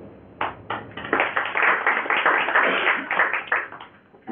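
Audience applauding: a few separate claps about half a second in, then full applause that dies away near the end.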